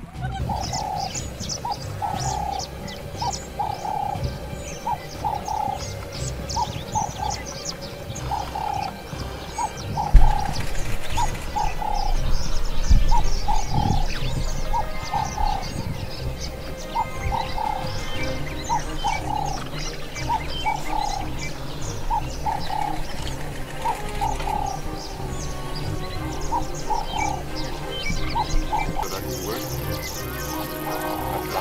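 Wild birds calling: a short cooing call repeated about once a second, with fainter high chirps among it. A single low thump about ten seconds in.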